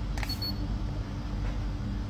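A short, high-pitched beep from a handheld infrared thermometer gun taking a reading, about a quarter second in, over a steady low hum.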